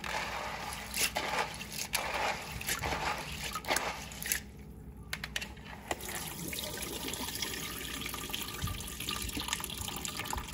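Dried pinto beans being swished by hand in water in a plastic bowl, rinsed to wash off their dirt: irregular splashing with the beans rattling against each other. From about six seconds in, a steadier run of water.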